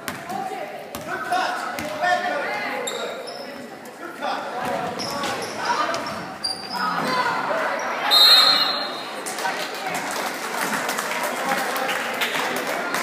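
Basketball game in a gym: a ball bouncing on the hardwood, sneakers squeaking, and spectators talking and calling out in the echoing hall. A referee's whistle blows about eight seconds in, the loudest sound here, and play stops.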